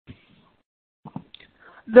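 Mostly a pause in a presenter's speech, with faint breath and mouth sounds about a second in; speech resumes at the very end.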